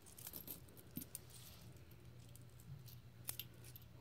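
Faint, scattered clinks of pennies being handled and sorted on a table as coin rolls are searched, over quiet room tone.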